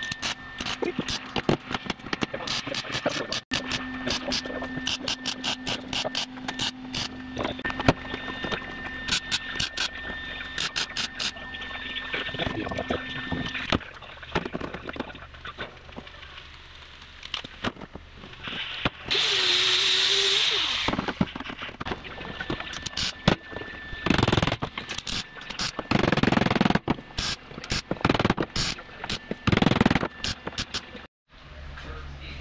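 Sheet-metal work on car body panels: a run of sharp metallic taps and clicks, with a burst of hissing, air-tool-like noise about 19 seconds in and hammer blows on the panel edge near the end.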